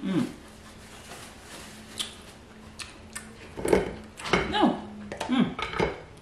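A woman's voice making several short hums with falling pitch, mostly in the second half, with a few sharp clicks and taps while she eats crab.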